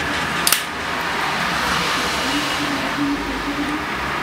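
Sharp double click of a switch on a homemade electronic pyrotechnic firing console about half a second in, over steady background hiss. A faint, broken low hum comes in during the second half.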